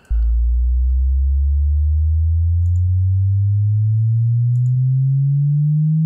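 A pure sine-wave test sweep: a single clean tone that starts suddenly and glides slowly upward from a deep hum, holding a steady level throughout.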